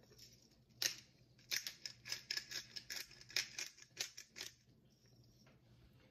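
Black pepper grinder being twisted over a bowl: a run of crisp grinding clicks, several a second, for about four seconds, then it stops.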